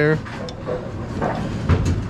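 A dull thump near the end, from hands working the Brunswick pinsetter's gearbox stop collar, over a steady mechanical background noise.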